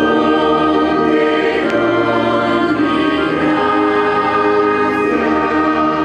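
Church choir singing slow, held chords in a liturgical chant or hymn.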